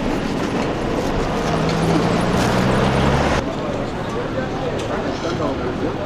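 Street traffic noise with a vehicle engine running, a steady low hum under a rushing haze, which cuts off abruptly about three and a half seconds in. After that, quieter street ambience with people talking in the background.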